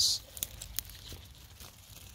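Faint rustling with a few small scattered crackles as a plant stem is split and its leaves handled to take a cutting.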